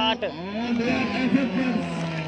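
A man's voice commentating, with drawn-out pitched vocal sounds but no clearly recognised words.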